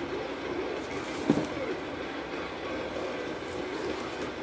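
A cardboard shipping box handled and turned over in the hands, with a single soft knock about a second in, over steady room noise.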